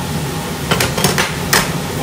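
A metal ladle knocking against a cooking pot: about five sharp clanks in quick succession within a second, over a steady background hum.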